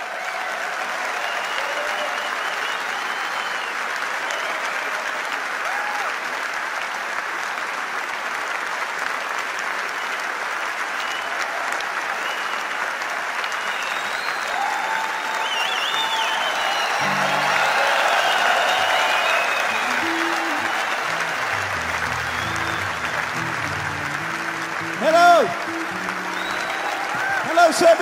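A concert audience applauding steadily, with scattered whistles and cheers. From a little past halfway, low stepping notes of music play underneath. A loud brief shout comes near the end.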